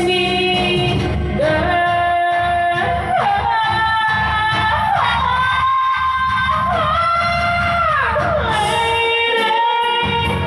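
A woman singing karaoke into a microphone over a backing track, holding long notes with pitch slides between them.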